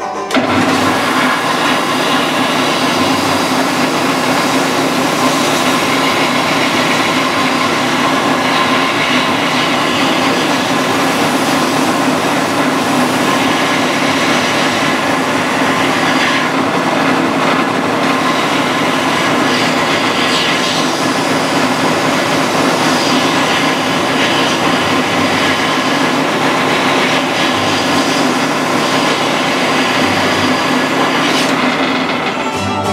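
Delta benchtop belt and disc sander switched on at the very start and running steadily: a loud, even machine noise with a constant low hum.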